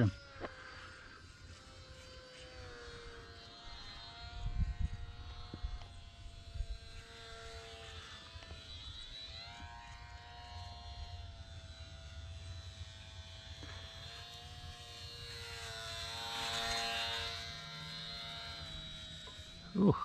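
Electric motor and propeller of a HobbyZone UMX Sport Cub S micro RC plane buzzing in flight, its pitch rising and falling with the throttle, loudest about sixteen seconds in. Bumps of wind on the microphone about four to five seconds in.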